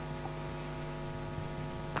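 Steady electrical mains hum with a ladder of evenly spaced overtones, unchanging throughout.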